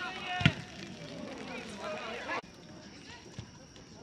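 Distant voices of players and spectators at an outdoor soccer game, with a single sharp thump about half a second in. The sound drops suddenly a little before halfway through, leaving only faint distant voices.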